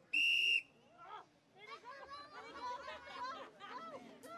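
A single short, high-pitched whistle blast right at the start, the starting signal for the race after the call to get ready, followed by crowd chatter.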